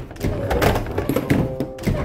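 Background music, with several metallic clunks as a door's lever handle is worked and the lock unlatched.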